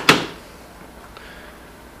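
A sharp click right at the start, as the plug of a small 12-volt AC adapter is pushed into a mains socket, then a quiet room with one faint tick about a second in.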